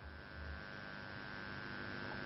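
Steady hiss with a low electrical mains hum, the background noise of an old recording, with a brief low rumble near the start.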